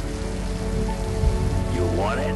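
Steady rain falling on a street, with held notes of background music underneath.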